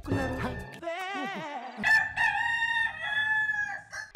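Rooster crowing, played as a sound effect: a wavering opening and then a long held note of about two seconds.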